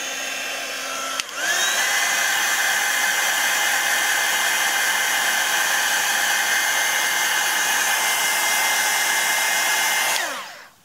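Handheld craft heat tool blowing hot air to dry wet ink and paint on a journal page. About a second in it clicks up to a higher setting, its whine rising over half a second to a steady high pitch over the hiss of the air. It winds down at the very end.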